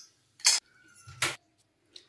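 Two brief handling sounds about a second apart: a kitchen utensil against a glass mixing bowl of flour, the second with a soft knock.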